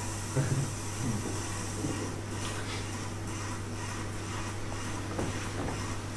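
Room tone in a lecture room: a steady low hum, with a couple of faint brief sounds about half a second in and near the end.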